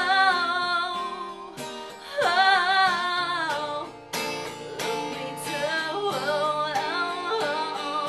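A woman singing long, wavering held notes over a strummed acoustic guitar, one note swooping up into pitch about two seconds in.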